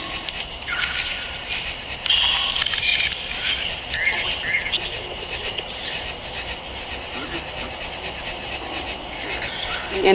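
Night-time chorus of insects, a steady high-pitched trilling, with a few short chirps or calls around two and four seconds in.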